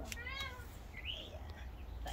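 A cat meowing once, briefly, about a third of a second in. A short rising chirp, like a bird's call, also comes again about a second in.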